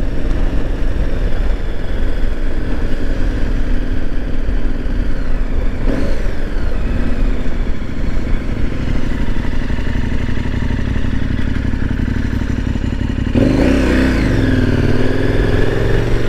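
2017 KTM 1090 Adventure R's V-twin engine running at low road speed. Its note swells and rises sharply about thirteen seconds in as the bike accelerates.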